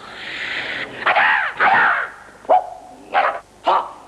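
A man's hoarse, wordless shrieks and yells from a film soundtrack: a long rough cry, then a few short sharp yelps.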